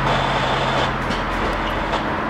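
Norfolk Southern diesel helper locomotive running as it approaches, its low engine hum under a steady wash of road-traffic and outdoor noise; the hum drops away about a second in.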